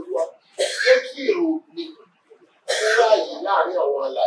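Speech only: a man preaching into a handheld microphone, in two bursts of forceful, breathy phrases.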